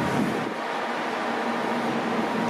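Steady drone of a Hurtigruten coastal ship under way: machinery and ventilation hum with a few constant tones over an even rush of noise.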